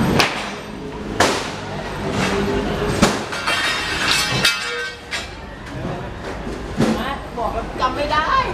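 Market stalls being put up: scattered sharp knocks and clangs of metal tube poles and hardboard tabletops being handled and set in place, about half a dozen hits, with the loudest about three seconds in. Voices carry underneath.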